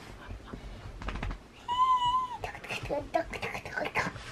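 A young child's voice giving one high, drawn-out squeal about two seconds in, held level and dipping at the end, a playful imitation of a horse's whinny ("히잉"); short vocal sounds follow near the end.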